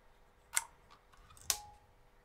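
Two short sharp clicks about a second apart, the second with a brief ring: a small PLA 3D print being handled and released from a flexible PEI print sheet.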